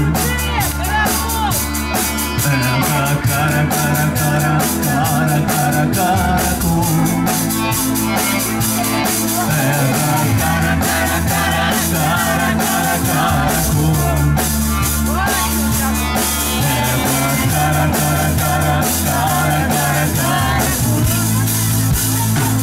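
Live rock band playing a song: a drum kit keeping a steady beat under bass and electric guitars, with a melodic line bending over the top.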